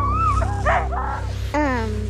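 Sled dogs yipping and whining over background music. There are several short wavering cries in the first second and one longer cry that falls in pitch about one and a half seconds in.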